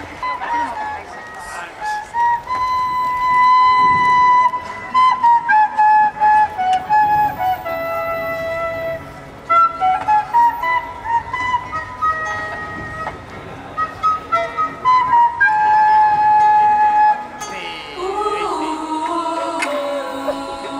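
A flute playing a solo melody line, moving through held and stepping notes. Near the end, voices come in to start singing.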